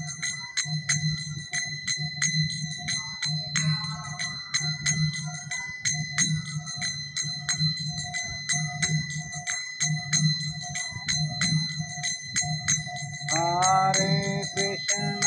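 Karatalas, small brass hand cymbals, clashed in a steady kirtan rhythm, about three to four ringing strikes a second, over a low regular beat. A singing voice comes in near the end.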